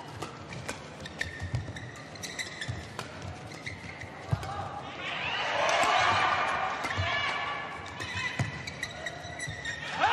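Badminton rally: sharp racket hits on the shuttlecock and short squeaks of shoes on the court mat. About five seconds in, crowd voices swell in the hall for a couple of seconds.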